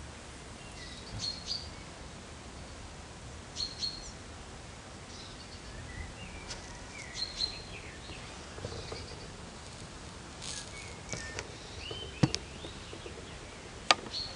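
Small songbirds chirping now and then in short high calls, some sliding up or down, over a low outdoor hiss. A couple of sharp clicks come near the end.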